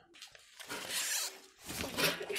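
Handling noise: a rustling rub lasting about a second as a knobby motocross tyre is moved against clothing.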